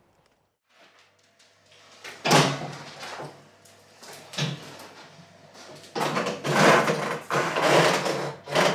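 A heavy motorcycle being pushed up onto a lift table and into its steel front-wheel chock: a hard clunk a couple of seconds in, another knock about two seconds later, then a longer run of clunking and rattling as the front wheel rolls into the chock.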